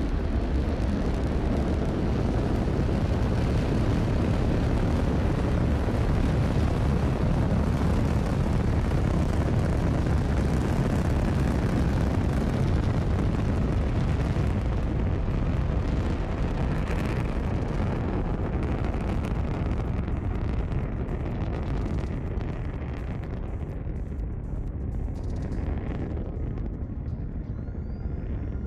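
Falcon 9 first stage's nine Merlin engines at liftoff and climb-out: a loud, steady rocket-exhaust rumble, deepest in the bass. In the last several seconds it grows duller and slightly quieter as the rocket climbs away.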